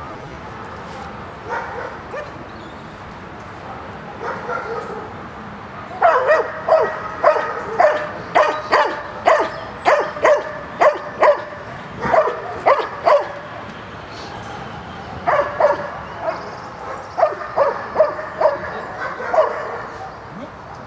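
A dog giving quick runs of short, high yelps and barks, about two a second, with a pause in the middle. It is the excited vocalizing of a working dog during heelwork.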